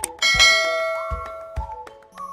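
A bell-chime sound effect for clicking a notification bell strikes once, about a quarter second in, and rings out, fading over about a second and a half, over background music with a steady beat.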